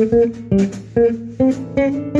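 Jazz performance of an electric bass guitar plucked with the fingers, playing a line of separate notes that change pitch every fraction of a second, with drum and cymbal hits between them.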